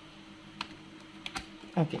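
A few light plastic clicks as a DDR2 laptop RAM module is pushed into its memory slot, the sharpest about one and a half seconds in as it seats, over a faint steady hum.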